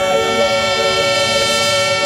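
Background music: a sustained chord held steady, with no beat or vocal.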